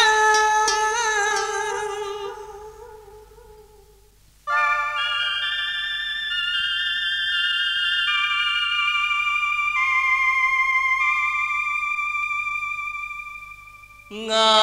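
Vọng cổ music: a wavering held note fades out over the first four seconds. About half a second later a new piece starts with long held instrumental notes that step down in pitch.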